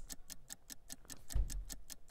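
Faint, fast, even ticking of a countdown clock sound effect, several ticks a second, with a soft low thump about one and a half seconds in.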